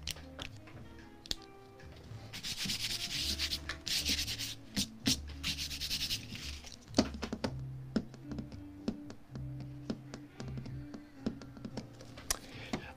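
Watercolor paper taped to a board sliding and rubbing across a tabletop in a few scraping strokes a few seconds in, with scattered light clicks and taps as it is handled, over quiet background music.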